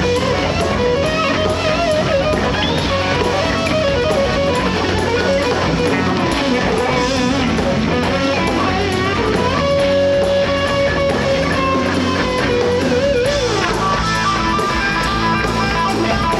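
A live rock band plays an instrumental passage: an electric guitar lead with long held and bending notes over bass guitar and drums.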